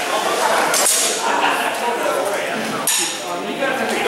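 Metal practice blades clashing, longsword against doble ginunting: two sharp clinks, about a second in and near the end, the second ringing briefly. Voices murmur in the background.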